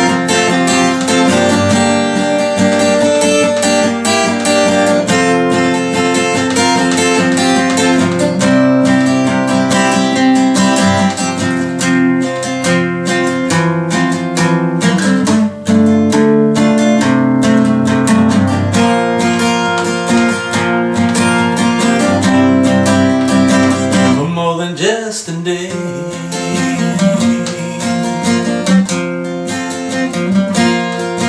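Acoustic guitar played solo, strummed and picked through an instrumental passage of a slow ballad.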